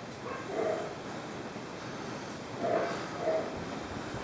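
Dogs barking faintly in the background, a few separate short barks.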